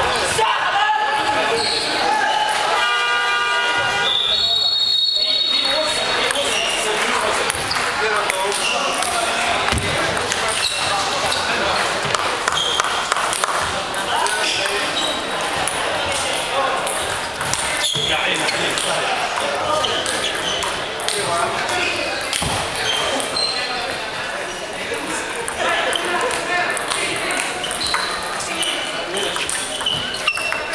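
Table tennis balls clicking off rubber paddles and the table in rallies, over steady background chatter of voices in a large hall. A brief pitched tone sounds about three to five seconds in.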